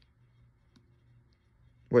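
Quiet room tone with a few faint, small clicks, then a man's voice says "Wait" right at the end.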